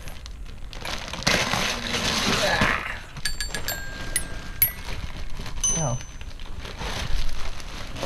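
Wrapping paper rustling and crinkling, then about five notes struck on a toy xylophone with metal bars, each ringing briefly with a bright, high tone.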